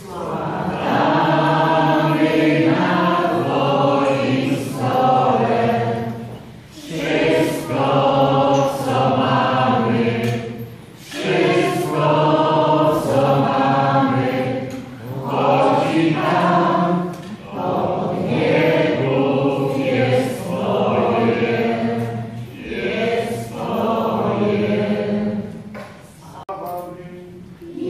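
A group of voices singing a hymn at Mass during the preparation of the gifts, in sung phrases a few seconds long with brief breaks between them.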